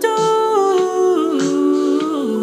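A man humming a cappella in layered vocal harmonies: several held notes sound together as a chord, the upper voices stepping down in pitch while the lower ones hold.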